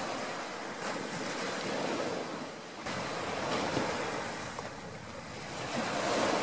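Ocean surf breaking and washing up a beach, a steady rush that swells and eases a few times.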